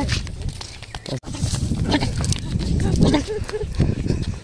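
Laughter, over a low, steady rumble of wind on the microphone.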